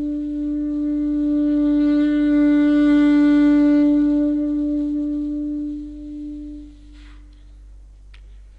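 Solo alto saxophone holding one long note that swells to its loudest in the middle, then fades away about seven seconds in.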